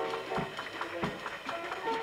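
Live jazz from a small piano, bass and drums combo, recorded on tape: a run of quick, short melody notes over a bass line.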